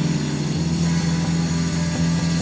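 Live rock band on electric guitars and bass holding a loud, steady, low droning chord, with little drumming.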